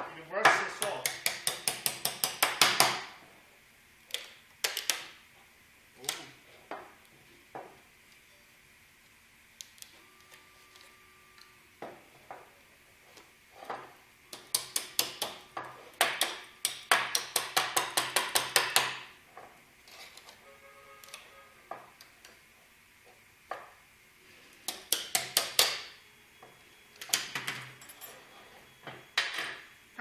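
Rapid bursts of sharp metal taps from a small wrench striking a large 3D print on its taped build plate, knocking it loose from the plate. Several taps a second, in runs of a few seconds with pauses between.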